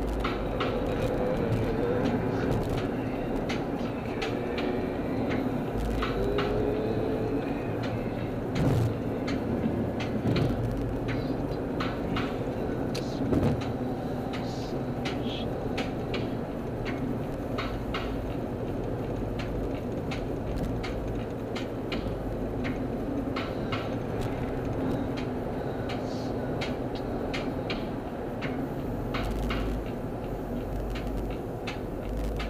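Steady road and engine noise inside a car's cabin at freeway speed, with frequent small clicks and rattles and a few louder thumps.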